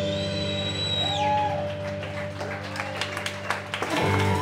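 A live rock band's final chord ringing out with bass and guitar sustained, a high held note sliding down and stopping about a second in. Scattered hand claps from the audience start in the second half.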